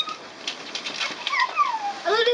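A toddler's high-pitched whining squeal, its pitch gliding down in the second half, with a few light clicks.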